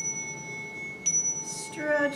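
A small handheld chime struck twice, about a second apart. Each strike leaves a clear, high ringing tone that carries on and overlaps the next.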